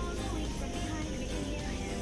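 Background music: a melody moving over a steady bass line.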